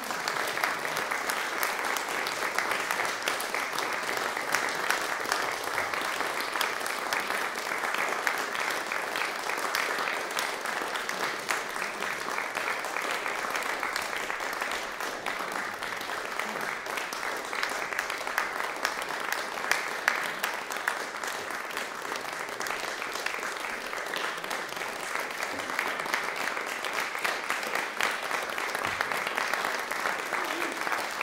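Concert audience applauding: dense, steady clapping throughout, dipping a little in the middle and picking up again near the end.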